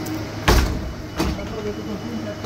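Two sharp thumps, the louder about half a second in and a weaker one under a second later, over steady street background.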